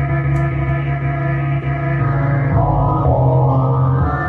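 Synthesizer music from a beat in progress: sustained keyboard chords over a deep, steady bass, with a change in tone in the second half.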